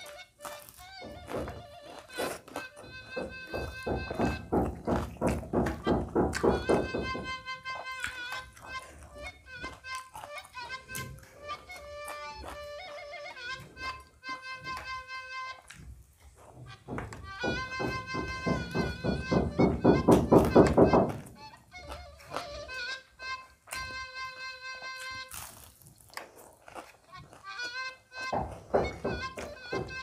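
Repeated knocking and banging from house-building work next door, heard over background music, with two louder stretches of rapid strikes.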